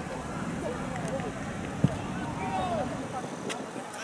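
Scattered shouts and calls of football players across the pitch, with one sharp thud a little before two seconds in.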